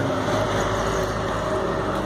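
Garbage truck's engine running close by as the truck rolls past, a steady hum.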